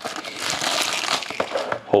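Clear plastic shrink-wrap being torn and crumpled off a trading card box: a dense crinkling that lasts about a second and a half, then a few light clicks.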